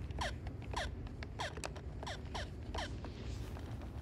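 Handheld video game bleeping: a quick run of about eight short electronic chirps, each falling in pitch, with button clicks, over a steady low rumble.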